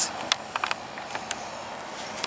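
Handling noise of a phone being turned around in the hand: a few light clicks and taps in the first second and a half over a steady hiss.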